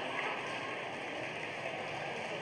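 A large audience reacting, a dense wash of laughter and clapping that slowly dies away.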